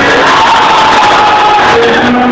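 Live concert music over a large crowd, with long held notes and crowd cheering.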